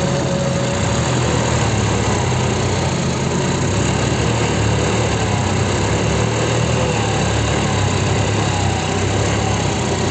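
John Deere 5310 tractor's diesel engine running steadily under load while its rear wheel spins in deep wet mud that the tractor is stuck in.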